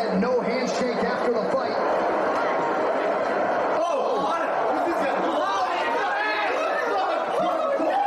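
Overlapping chatter: several people talking over one another in a room.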